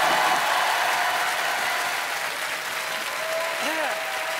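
Studio audience applauding, a dense, steady clapping that eases slightly toward the end.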